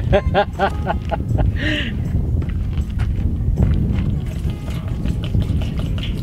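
Wind buffeting the microphone, a heavy low rumble throughout. A man laughs during the first second or so.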